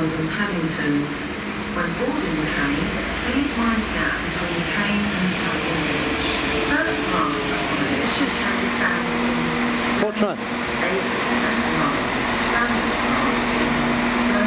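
Transport for Wales Class 197 diesel multiple unit moving slowly past the platform, its underfloor diesel engines running with a steady low hum that settles in about halfway through, with a brief clank a little after that.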